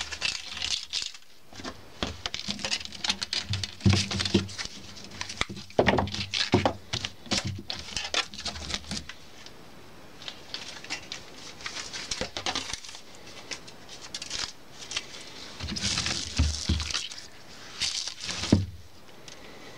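Irregular rustling, scraping and clicking of a stiff polypropylene broom's bristles and its copper wire stitching being handled and moved, with a quieter stretch partway through and the loudest handling near the end as the broom is turned over.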